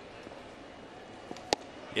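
Steady ballpark crowd murmur, then about one and a half seconds in a single sharp pop: a 92 mph slider smacking into the catcher's mitt for a strike.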